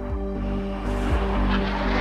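Background music with sustained low notes, joined about a second in by a building rush of jet noise from Harrier jump jets flying over.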